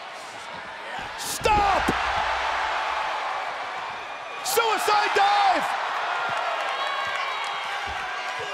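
Wrestling ring impacts over steady arena crowd noise: a loud slam about one and a half seconds in with a low boom from the ring, and another slam about four and a half seconds in, each followed by short shouts.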